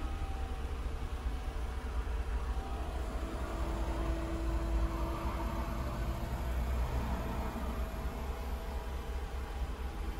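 Smart car's small three-cylinder petrol engine idling just after a start, heard from inside the cabin as a steady low rumble.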